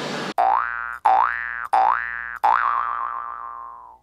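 Cartoon 'boing' spring sound effect played four times: three short rising boings in quick succession, then a longer one that wobbles and fades away.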